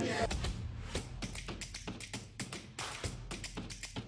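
Light tapping, several taps a second at uneven spacing, over faint background music.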